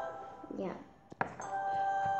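Bell-like electronic chime from a tablet colouring app: a click about a second in, then a ringing tone that holds on. A brief hum from a child's voice comes just before it.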